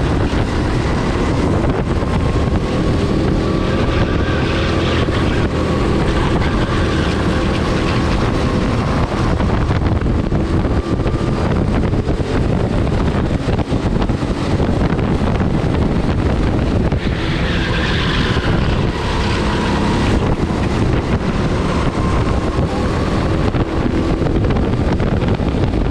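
Onboard sound of a racing kart at speed: its engine runs continuously, the note rising and falling, under heavy wind noise on the microphone.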